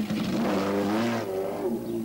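Motorcycle engine revving as the rider pulls away, its note rising a little and then holding steady before it stops suddenly near the end.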